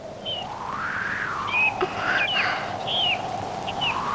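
Several short bird chirps in the second half, over a faint long tone that slides up and back down about a second in.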